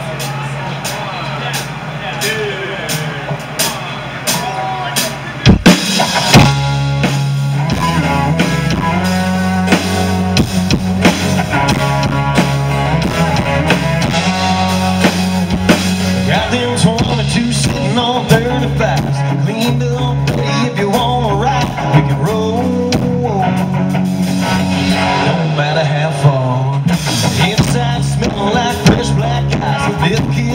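Live country-rock band playing the instrumental intro of a song on electric and acoustic guitars, bass and drum kit. A quieter opening gives way to loud hits about five and a half seconds in, after which the full band settles into a steady driving beat.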